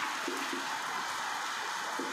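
Steady background hiss of room noise, with only faint traces of a marker writing on a whiteboard.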